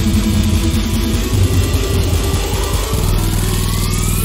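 Dubstep from a DJ set played loud over a festival sound system: a heavy, distorted growling bass over a steady beat, with a rising synth sweep building through the second half.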